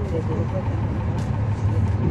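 Cummins ISL9 inline-six diesel engine of a NABI 40-foot transit bus running, heard from inside the passenger cabin as a steady low drone.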